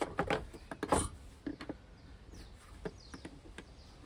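Flat screwdriver prying the plastic cover off a robot mower's top housing: a few sharp clicks and a louder snap about a second in, then fainter ticks and squeaks of plastic.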